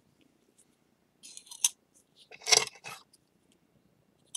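Thin spatula scraping against the broken edge of a small ceramic shard while spreading mugi-urushi (lacquer-and-flour paste) on it: a few short scrapes a bit over a second in, then a louder, longer scrape about halfway.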